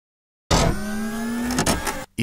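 Intro sound effect: after a moment of silence, a steady motor-like hum with several held tones starts abruptly about half a second in, with a couple of short knocks near the end.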